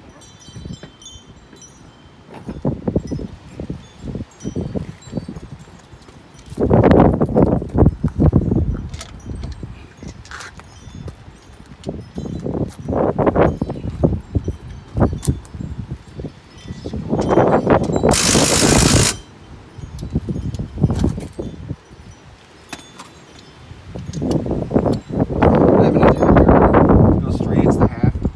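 Metallic clinks, knocks and scrapes of hand work on a golf cart wheel as the new aluminum wheel goes onto the hub and its lug nuts are fitted, coming in separate bursts of clatter. About 18 seconds in there is a hiss lasting about a second.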